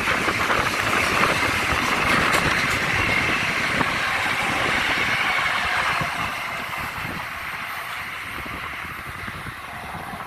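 Long Island Rail Road M7 electric multiple-unit train running past with a steady rumble and rush from its wheels on the rails. The noise eases off from about six seconds in as the train draws away.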